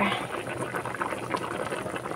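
Pan of chicken soup with vegetables boiling: a steady bubbling with many small pops.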